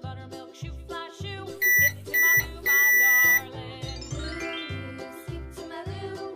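Three loud electronic beeps at one pitch, two short and one long, from a toy microwave signalling that its cooking cycle has finished, over upbeat children's music. A rising glide follows about four seconds in.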